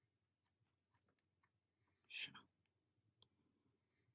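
Near silence with a few faint small clicks of glass seed beads and a beading needle being handled during bead weaving, and one short noisy burst about two seconds in.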